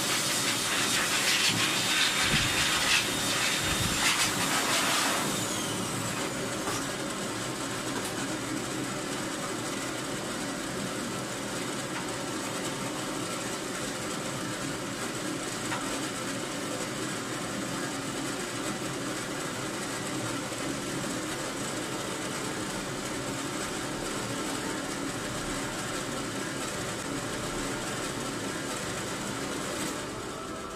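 Pet grooming blow dryer running. For the first five seconds the hose blows air onto the beagle's coat, louder and rougher; then it settles into a steadier, quieter hiss with a faint high whine.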